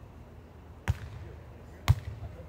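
A volleyball struck twice by players during a rally: two sharp slaps about a second apart, the second louder.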